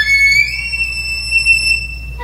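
Solo violin at the top of a fast rising run, sliding up to a very high, thin note and holding it steadily for over a second before it stops near the end.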